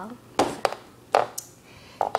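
A few light taps and knocks of a cardboard toy box being handled and turned.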